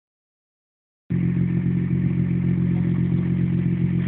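Nissan R35 GT-R's twin-turbo 3.8-litre V6 idling steadily, the sound cutting in abruptly about a second in.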